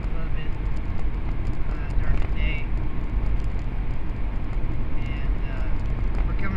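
Steady low rumble of road and engine noise inside a vehicle's cabin, with faint voice sounds about two seconds in and again near the end.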